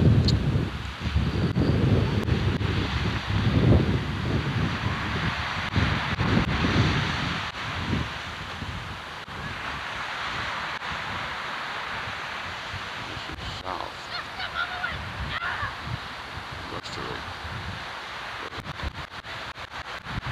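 Surf washing on the shore with wind buffeting the microphone in heavy gusts through the first several seconds, then easing to a steadier wash. A few short faint bird calls come about three quarters of the way through.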